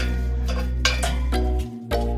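Background music with a deep, steady bass line, held chords and a percussion hit a little under once a second.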